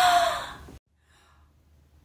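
A woman's voice trailing off into a breathy exhale that fades out, then dead silence from under a second in.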